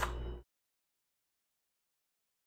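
Near silence: a brief sound in the first half second, then the audio drops to complete digital silence.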